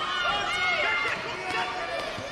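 Several voices shouting at once in overlapping, drawn-out calls, with no clear words.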